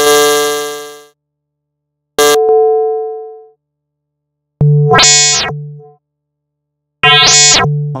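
Software modular synth patch in Native Instruments Reaktor Blocks playing four separate notes on the same pitch, about two and a half seconds apart, each starting sharply and fading over about a second. The last two grow much brighter, their overtones swelling and then dying away, as frequency modulation is patched in.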